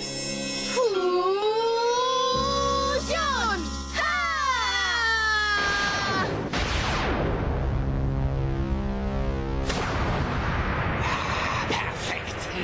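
Cartoon soundtrack: voices hold long, drawn-out shouted calls that glide in pitch over music for the first five or so seconds. Then a loud rushing burst of noise takes over for about four seconds.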